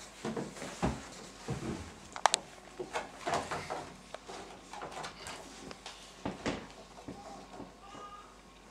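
Paper rustling and light knocks as a music book is opened, its pages turned and set on an upright piano's music rest, with a sharp click and brief squeak about two seconds in.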